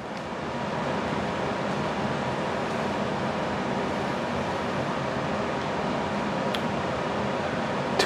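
Steady room noise: an even hiss with a faint hum, swelling a little over the first second and then holding level, with one faint click near the end.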